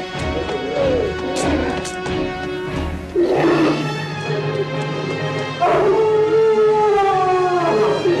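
Horror film soundtrack: an eerie score with a steady low drone under a werewolf's howls. A short howl sounds about three seconds in, and a long howl, falling in pitch, starts about halfway through and lasts over two seconds.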